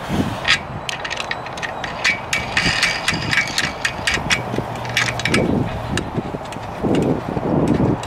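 Plastic wing nuts being fitted by hand onto the metal U-bolts of a roof-mounted bike rack: a run of light, irregular clicks and taps from the hardware being handled.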